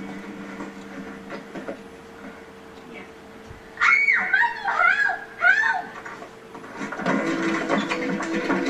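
A woman on a television soap cries out four or five times in quick cries that swoop up and fall, heard through the TV's speaker over a steady electrical hum. Music comes in near the end.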